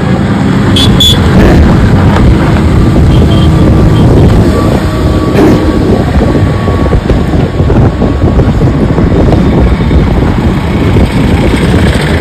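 Loud, steady low rumble of wind buffeting the microphone mixed with traffic passing on a road bridge.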